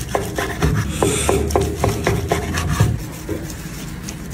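A long slicing knife sawing back and forth through smoked brisket, the blade rasping through the crusty bark and scraping on a wooden cutting board, about four to five strokes a second. The strokes ease off near the end.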